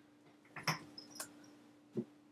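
A few sharp clicks of laptop keys being pressed, the Return keys of a MacBook and a MacBook Pro hit to log in: a cluster of clicks about half a second in and one more near the end, over a faint steady hum.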